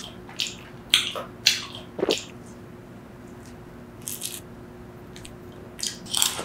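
Close-miked wet mouth sounds of eating soft, ripe papaya flesh off a spoon: a cluster of sharp, wet clicks in the first two seconds, then quieter chewing with a few small clicks near the end.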